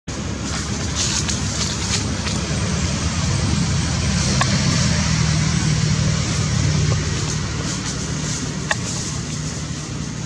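Steady rumble of a motor vehicle engine, growing louder in the middle and easing off toward the end, with a few sharp clicks.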